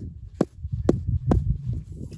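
A hammer striking hard sandy ground three times, about half a second apart, chopping it loose to dig down.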